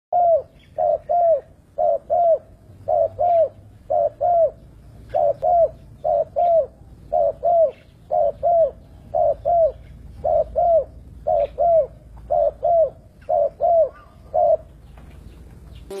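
Spotted dove (tekukur) cooing: short, arched coos, mostly in pairs, repeated about once a second, stopping shortly before the end.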